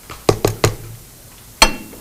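A few sharp plastic clicks and knocks as the bowl and blade of an Ariete Choppi mini chopper are handled: three close together about a third of a second in, and one more near the end.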